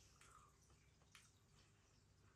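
Near silence: room tone, with a couple of faint soft clicks.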